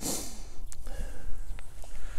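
Pocket-type American bully puppy sniffing and snorting with its nose down in dry grass, which rustles loudest right at the start.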